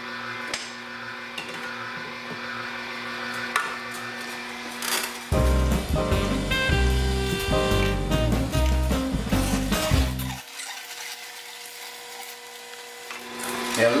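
Omega NC900HD slow masticating juicer running with a steady low hum. About five seconds in, music with a heavy bass line comes in over it for about five seconds, then stops.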